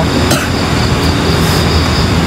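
Steady outdoor background noise: a low rumble with a thin, steady high-pitched drone above it and a brief faint rustle near the start.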